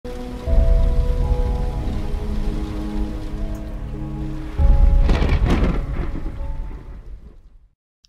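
Logo-intro sting: held synth chords over rain and thunder sound effects. A deep rumble comes in about half a second in, and a louder thunder-like crash comes at about four and a half seconds. It fades out just before the end.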